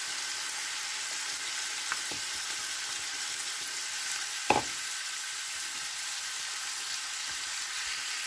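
Carrot and vegetables frying in a pan, a steady sizzle throughout, with a single knock about four and a half seconds in.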